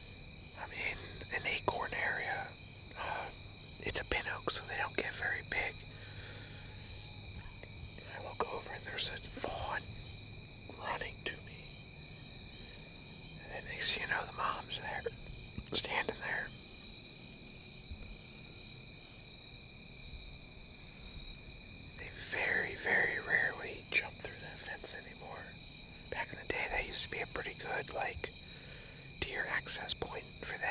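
A man whispering in short bursts over a steady insect chorus, the insects trilling at a constant high pitch.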